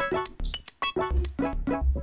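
Live electronic music from a modular synthesizer and keyboard: a choppy run of short, clinking bell-like blips, with two deep bass hits, one about a second in and one near the end.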